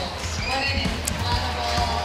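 Stadium public-address sound: music with a thumping bass beat and voices over it.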